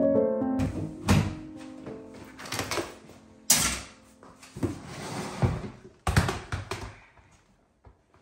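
Piano music that stops half a second in. Then a series of irregular knocks, thuds and rustles from someone handling laundry and objects around a front-loading washing machine, the loudest about one, three and a half, and six seconds in.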